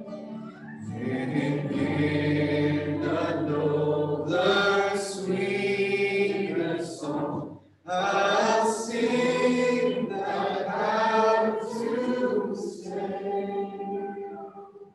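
Congregational worship singing led by a man at a microphone, with guitar accompaniment: two long sung phrases, broken by a brief pause about halfway through.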